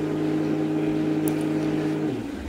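A steady machine-like hum, a low tone with a few higher tones above it, that cuts off suddenly at the very end.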